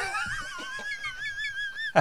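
A man's high-pitched, wheezing squeal of laughter, held for about two seconds with a wavering pitch.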